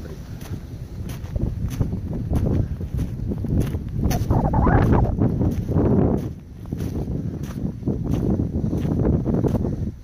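Footsteps in snow at a walking pace, a little under two steps a second, over wind rumbling on the microphone; loudest about halfway through.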